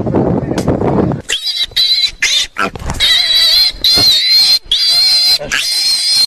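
An animal-like sound: a rough, low grunting for about a second, then a run of shrill, wavering squeals broken into short bursts.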